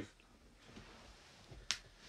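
A single short, sharp click near the end, against quiet room tone.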